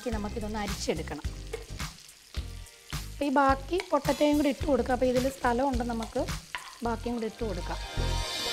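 Potato and cauliflower pieces frying and sizzling in hot oil in a pan as they are stirred with a spatula. A louder pitched melody runs over the sizzle.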